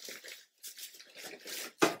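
Rustling and handling noises from rummaging in a plastic shopping bag for Christmas decorations, in irregular bursts. A single sharp knock comes near the end.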